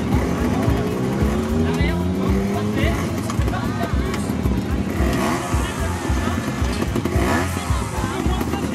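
Trials motorcycle engine revving in rising pulls while the bike climbs over rocks, mixed with background music that has a steady beat.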